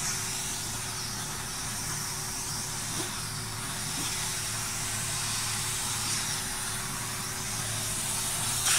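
Air hissing steadily out of an inflated balloon through the bottle-cap nozzle of a CD balloon hovercraft; the escaping air forms the cushion the craft glides on.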